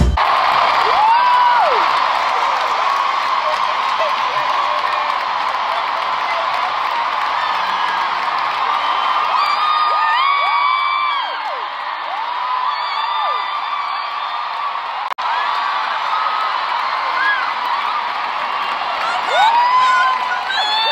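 An arena concert crowd cheering and screaming in a sustained ovation, with single high whoops rising and falling above the roar.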